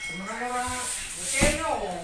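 A drawn-out voice with wavering, rising and falling pitch, gliding down near the end, with a short knock about one and a half seconds in.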